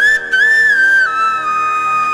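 Flute playing a sliding, ornamented melody over a steady drone, settling onto one long held note about a second in.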